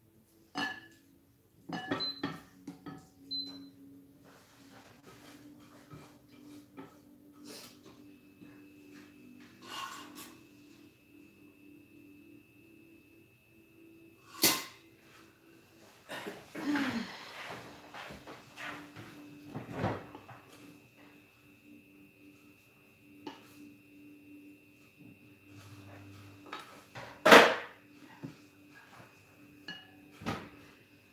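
Kitchen handling sounds: tongs clicking and knocking against ceramic bowls and a baking dish as pork cutlets are dipped and coated. There are two sharper knocks, one about halfway through and one near the end, and a faint steady high whine from about eight seconds in.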